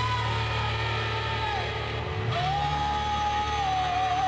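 Live rock band playing, with an electric guitar and drums: long held melody notes that bend at their ends, over a steady low bass note.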